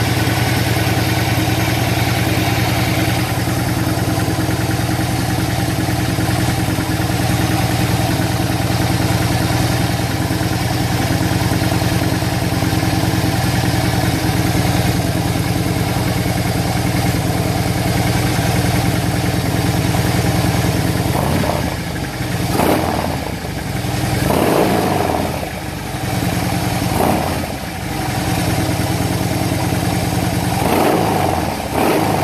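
2011 Harley-Davidson Dyna Fat Bob's air-cooled V-twin idling steadily through Freedom exhaust pipes, on a stage one TTS Mastertune remap with an S&S Stealth intake. About two-thirds of the way in, the throttle is blipped several times in quick revs that rise and fall back to idle.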